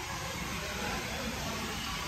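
Steady hissing background noise of a large indoor hall, with a low rumble underneath and no distinct events.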